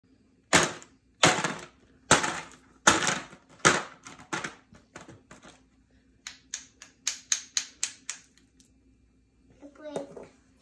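Small toy hammer striking ice cubes in a plastic tub: five hard knocks about three quarters of a second apart, then lighter, quicker taps. After a short pause comes a faster run of about ten taps, roughly four a second, which stops over a second before the end.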